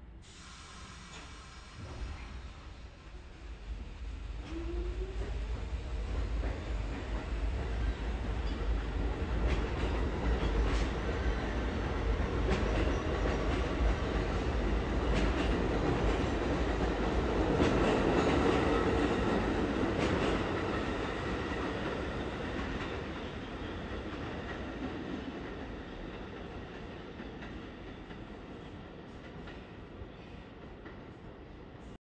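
New York City subway train running on the rails, its wheels clicking over rail joints with some squeal. The sound builds over the first ten seconds, is loudest about two-thirds through, then fades.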